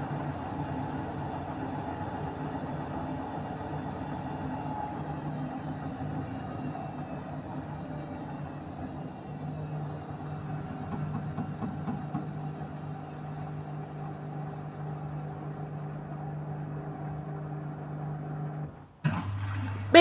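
Hotpoint Ariston front-loading washing machine running with soapy water in the drum: a steady motor hum, with a whine that slowly falls in pitch a few seconds in. About a second before the end the hum drops out briefly and comes back at a lower pitch.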